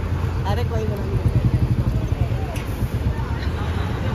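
Steady low rumble of road traffic, buses and motorbikes passing, a little louder about a second in, with a short exclamation over it.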